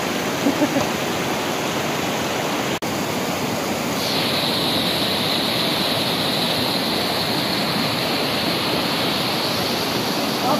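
Fast, muddy mountain stream rushing over rocks, a loud steady rush of water. It breaks off for an instant about three seconds in, and from about four seconds in it turns brighter and hissier.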